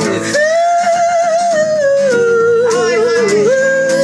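A man singing one long held note with a wavering vibrato over a strummed acoustic guitar. The note starts about a third of a second in, sinks lower partway through and jumps back up near the end.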